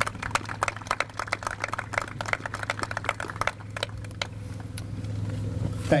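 A small group of people applauding, with separate hand claps that thin out after about four seconds, over a steady low hum.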